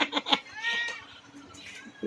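Domestic cat meowing: one short meow that rises and falls in pitch about half a second in, after a quick run of short clipped sounds.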